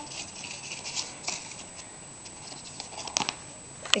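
Cardstock pages and tags of a handmade scrapbook album being handled and turned: quiet paper rustling with a few light clicks.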